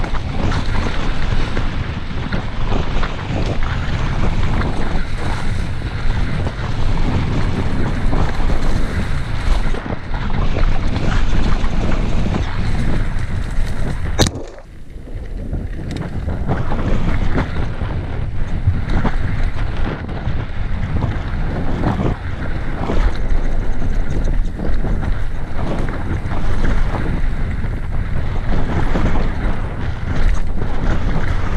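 Wind buffeting the microphone and knobby tyres rumbling over a dirt trail on a fast mountain-bike descent, with frequent knocks and rattles from the bike over bumps and roots. About halfway through, a sharp click is followed by a brief lull of a second or two.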